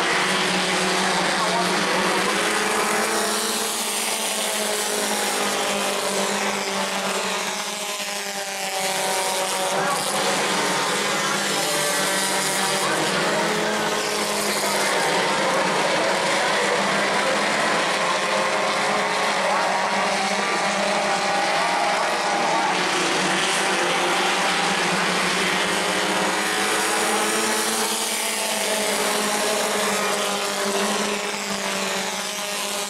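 A pack of Bomber-class stock cars racing on an asphalt oval. Their engines rev hard and sweep past several times, rising and falling in pitch.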